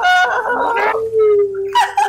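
A person's long, drawn-out wailing howl: a short higher cry, then one long held note that slides slowly lower.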